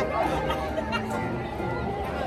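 Crowd chatter: several voices talking at once, none clearly in front.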